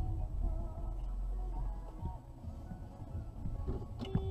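Low, steady rumble heard inside a car's cabin, with faint music playing under it.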